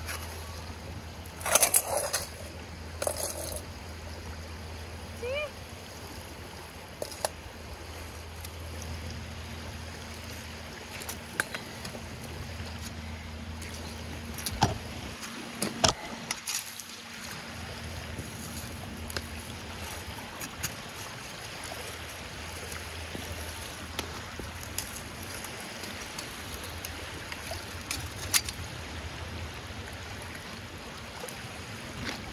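A short metal spade digging into a rocky, gravelly clam beach, with scattered sharp knocks and scrapes as the blade strikes stones, the loudest about two seconds in. Under it, water washing and lapping at the shoreline and a steady low rumble.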